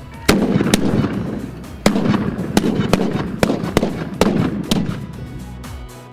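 A volley of black-powder matchlock guns fired in a line: many sharp shots in quick, irregular succession. The loudest come about a quarter of a second in and near the two-second mark, and the shooting thins out about five seconds in.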